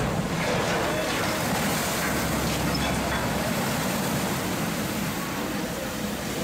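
Steady rushing and splashing of water as a side-launched ship's hull hits a canal and throws up a large wave that surges over the bank.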